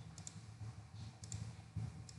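Computer mouse clicking as items are selected on screen: two quick pairs of clicks, about a second apart, over a low steady hum.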